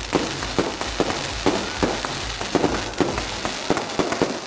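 Fireworks going off: a rapid, irregular series of bangs and crackles.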